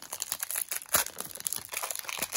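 A foil-lined trading card pack wrapper being torn open and crinkled by hand: a rapid, irregular run of crackles and rips.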